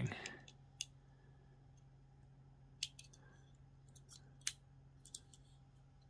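A few faint, scattered clicks and taps, about five spread over several seconds, from a Hot Wheels die-cast toy car being handled and turned over in the fingers.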